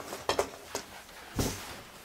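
Soft knocks and rustling of a person shifting and kneeling on a carpeted floor. There are three brief knocks, and the loudest comes about one and a half seconds in.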